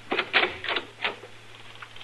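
A quick, uneven run of clicks and knocks, about six in the first second, from a radio-drama sound effect.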